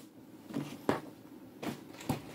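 A few short knocks of plastic bottles being handled and set down on a wooden tabletop. The sharpest comes about a second in.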